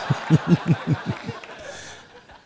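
A man chuckling: a quick run of about six low 'heh' pulses in the first second and a half.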